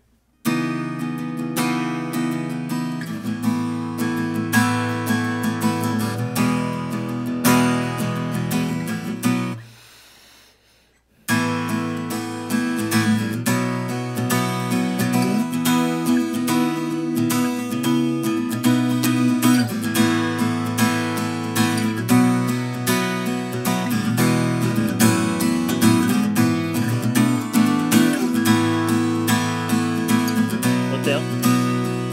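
Gibson L-00 Vintage small-body acoustic guitar strummed with a pick, rhythmic chords. About nine and a half seconds in the strumming stops and the last chord dies away to near silence. The strumming starts again suddenly about eleven seconds in.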